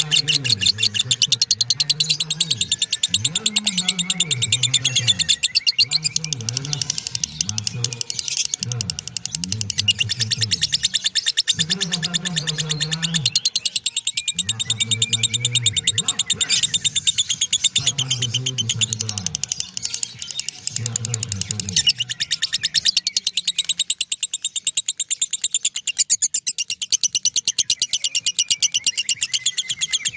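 Masked lovebird giving its 'ngekek', a long, unbroken, very rapid chattering trill that keeps going without a pause, with a low voice in the background.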